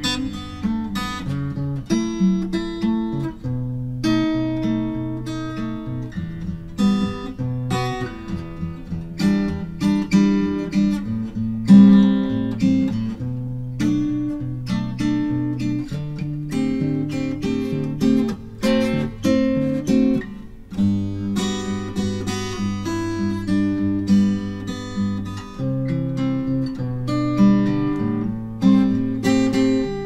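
Steel-string acoustic guitar played solo, a continuous flow of plucked chords and single notes over changing bass notes. It is recorded in mid-side stereo, a Warm Audio WA47 tube mic in cardioid as the mid and a WA87R2 in figure-of-eight as the side, aimed at the 12th fret.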